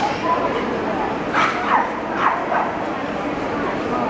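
A dog yipping: about four quick, high yips in the middle, each falling in pitch.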